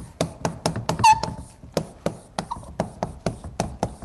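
Chalk writing on a blackboard: a quick run of sharp taps and short scrapes as letters are formed, about five a second, with a brief high squeak about a second in.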